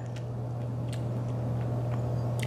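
A person chewing a mouthful of saucy chicken wing, faint soft clicks of the mouth over a steady low hum that carries most of the level.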